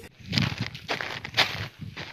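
Faint, irregular crunching and rustling, with two slightly louder strokes about half a second and a second and a half in.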